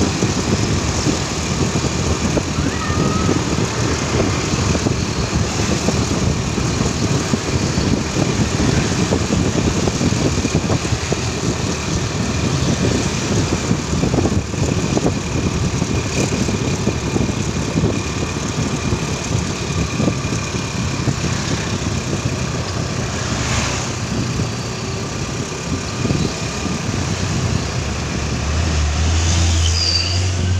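Wind buffeting the microphone over the running engine of the vehicle carrying the camera as it rides along a street, with passing traffic; a low steady hum comes in near the end.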